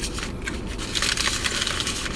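Close-up eating sounds from a foil-wrapped burrito: chewing mixed with the crinkling of the aluminium foil wrap, a steady run of irregular crackles.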